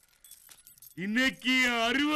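After a near-silent first second, a person's voice calls out loudly about a second in, holding long drawn-out vowels.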